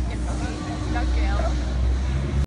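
Brief speech over a steady low rumble of background noise in a large indoor hall.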